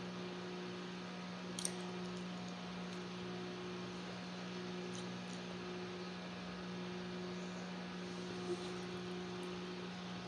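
Steady low electrical hum over quiet room tone, with a few faint clicks.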